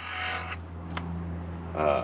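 A steady low hum in the background, with a brief rustle at the start, a single click about a second in, and a short syllable of a man's voice near the end.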